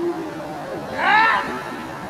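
A German shepherd gripping a protection bite sleeve gives one short, high cry that rises and falls, about a second in.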